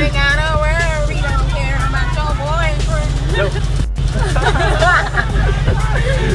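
Excited voices and babble over loud music with a heavy bass beat.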